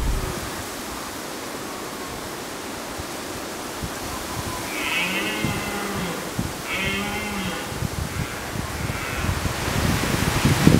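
Red deer calling twice, each call under a second long and rising then falling in pitch, with a fainter third call near the end, over a steady rush of wind through the grass.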